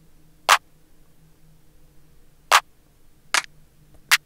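Clean clap sample from a drum kit playing back in a beat: three sharp claps, about half a second in, about two and a half seconds in, and a softer one just after, over a faint steady hum.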